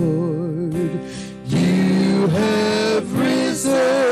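Live worship band music: a singer holding long notes with a wide vibrato over guitars and keyboard, with short breaks between phrases.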